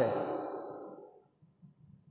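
A man's speaking voice finishes a word and its echo fades away over about a second, leaving near silence for the rest of the pause.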